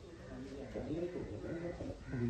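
People talking quietly in the background, with no other clear sound.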